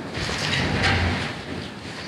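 Gusting wind buffeting the microphone and the flapping tent canvas, with a low rumble that swells about half a second in and eases off.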